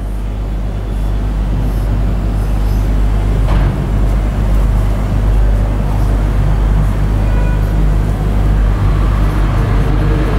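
Steady low rumble that grows a little louder over the first few seconds and then holds.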